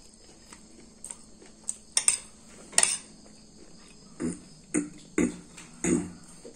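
A metal spoon and fork clinking and scraping against a ceramic plate while eating. Several sharp clinks come about two to three seconds in, then a few duller knocks near the end.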